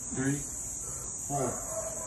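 A steady high-pitched buzz runs throughout. Two short shouted calls come over it, one near the start and one about halfway through.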